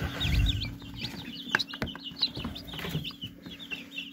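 Chicks peeping continuously, many short high chirps overlapping, over a steady low hum. A few sharp knocks come around the middle.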